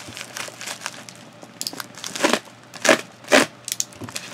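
Plastic mailing bag being torn open and crinkled by hand: a run of short rustling tears, the loudest a little past two seconds in, about three seconds in and again near three and a half seconds in.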